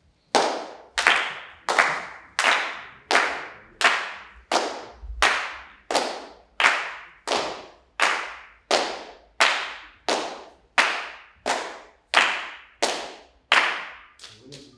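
Body percussion: a group clapping hands in unison, a steady pulse of about twenty loud claps roughly 0.7 seconds apart, each ringing out in the auditorium's reverberation.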